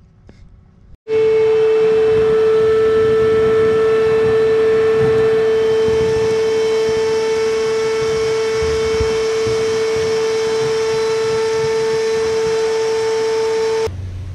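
Shop vac motor running with a loud, steady whine over a rushing air noise as its hose sucks debris from the bottom of a hot tub cabinet. It starts suddenly about a second in.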